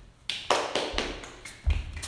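A quick run of sharp hand claps, about seven in a second and a half, with a heavy thud of a bare foot on a wooden floor near the end.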